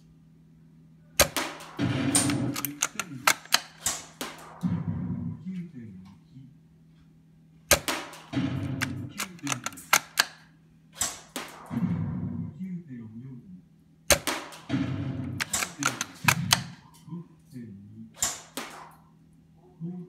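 Spring-powered Tokyo Marui VSR-10 G-Spec airsoft bolt-action rifle fired three times, about six seconds apart. Each shot is a sharp crack, followed by a run of clicks and rattles as the bolt is worked to cock the spring and chamber the next BB.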